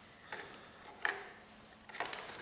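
A few light clicks and taps of small plastic parts being handled and set down on a metal worktable, the sharpest about a second in.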